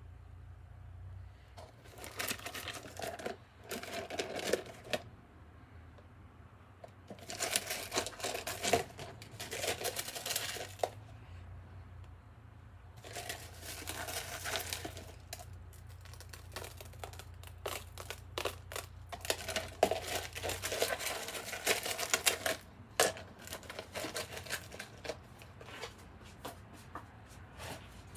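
Pieces of crushed glass crystal being handled and picked through by hand, in four bursts of a few seconds each, followed by scattered sharp clicks near the end.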